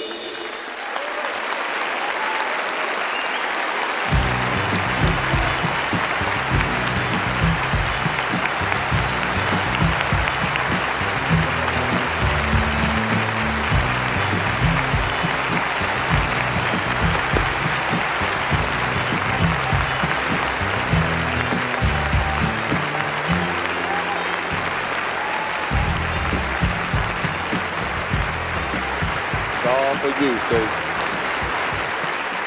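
Sustained audience applause filling a theatre, with band music and a rhythmic bass line joining in about four seconds in and running under the clapping.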